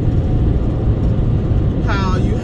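Steady road and engine noise inside a car cruising at highway speed: an even, low rumble with no changes.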